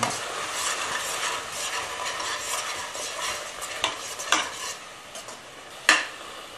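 Tomato and spice masala sizzling in a pressure cooker pot as a spatula stirs and scrapes through it. A few sharp knocks of the spatula against the pot come in the second half, the loudest near the end, while the sizzle quietens.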